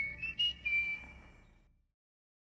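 Whistled jingle: a few short notes stepping up in pitch, ending on one held note that fades out about a second and a half in.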